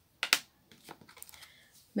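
Two sharp plastic clicks close together from a stamping platform as a freshly stamped card is taken out, followed by faint light taps and rustling of the card being handled.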